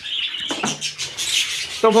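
Budgerigars chattering, a steady stream of short, high chirps and twitters.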